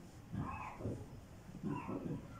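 Two short, low human vocal sounds from someone in the congregation, one about a third of a second in and another near the end, each lasting under a second.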